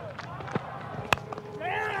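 Cricket bat striking the ball once, a sharp crack about a second in, over a low background murmur from the ground.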